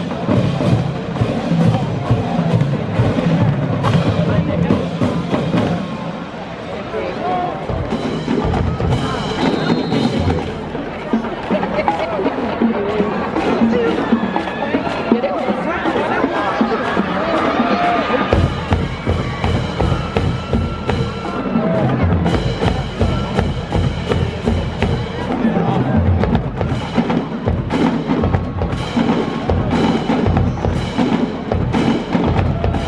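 Marching band drumline playing rapid rhythmic cadences on snare drums, bass drums and crash cymbals, with crowd voices underneath. The bass drums grow heavier about two-thirds of the way through.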